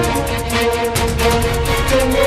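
Breaking-news theme music, with sustained notes over a fast, steady beat.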